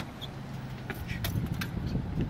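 Mitsubishi Lancer's engine idling steadily, with a few light clicks in the second half.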